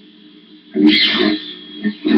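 A faint steady hum, then about a second in a sudden loud burst of breathy vocal noise from a person, lasting about half a second before it fades.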